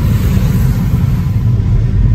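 Steady low rumble of a car being driven, heard from inside its cabin, with engine and tyre noise on wet pavement.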